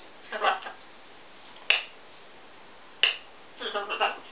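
Blue-and-gold macaw making short sounds: a brief throaty chatter near the start, two sharp clicks about a second and a half apart in the middle, and another short chatter near the end.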